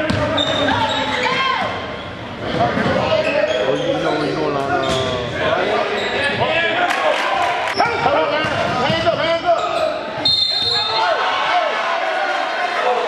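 Live basketball game sound in a school gym: a ball bouncing on the hardwood court among players' and spectators' shouting voices, echoing in the hall.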